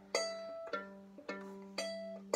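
Violin played left-hand pizzicato: four plucked notes, about one every half second, alternating between two pitches, each ringing briefly and fading.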